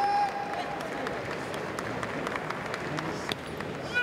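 Kendo competitor's long, steady kiai shout trailing off about a second in, over the background noise of an arena crowd.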